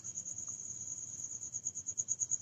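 Insect chirping: a high, steady pulsing call at about ten pulses a second.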